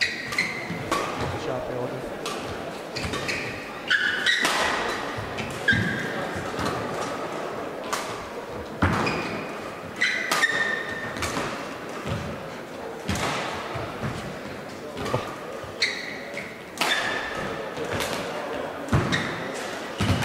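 A long badminton rally: rackets striking the shuttlecock again and again, roughly once a second, with short squeaks of shoes on the court, echoing in a large sports hall.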